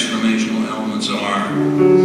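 Live music: a man singing over instrumental accompaniment, with a sustained chord coming in near the end.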